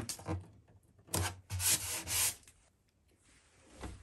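Fingers rubbing masking tape down onto the top of a Gibson J-45 acoustic guitar: a short rub at the start, then two hissy rubbing strokes about a second in, then quiet.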